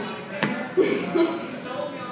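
A single sharp knock about half a second in, followed by a few quiet spoken words.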